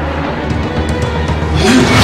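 Tense film score carried by a low steady drone. About one and a half seconds in, a fast whoosh sound effect swells up.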